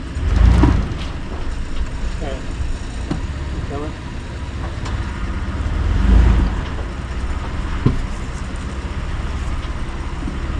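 Mitsubishi Montero's engine running low and slow while rock crawling, swelling louder under load twice, about half a second in and again around six seconds, with a sharp knock near eight seconds. Heard from inside the cabin.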